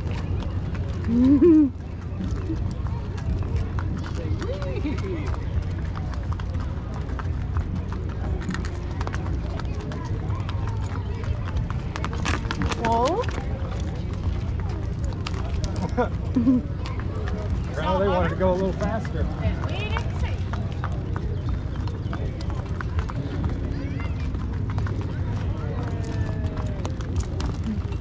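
Ponies walking round a pony-ride ring, their hooves clip-clopping on the dirt, under scattered background voices and a steady low rumble.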